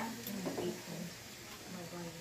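A faint, low voice murmuring quietly in the background over room tone; nothing mechanical is heard.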